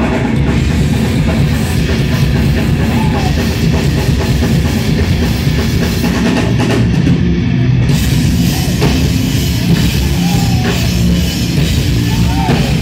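Live heavy metal band playing loud, with electric guitar and a drum kit.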